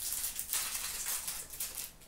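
Foil trading-card pack wrapper crinkling and tearing as hands rip the pack open, a dense crackly rustle that fades out near the end.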